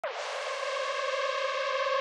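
Electronic music intro: a held synthesizer tone that starts suddenly with a quick drop in pitch, then sustains steadily on one chord and slowly grows louder.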